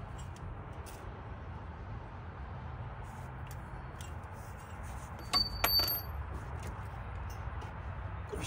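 A few sharp metallic clinks close together about five seconds in, with a short bell-like ring, as small metal parts are handled during engine-bay work. Under them is a low, steady background rumble.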